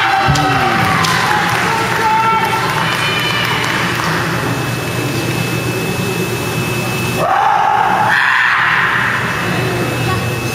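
Kendo fighters' drawn-out kiai shouts echoing in a gymnasium over a steady low hum. One long shout comes in the first couple of seconds, and a louder one rises starting about seven seconds in.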